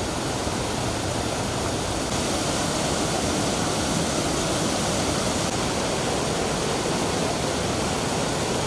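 Fast-flowing mountain river rushing over rocks: a steady, unbroken rush of water.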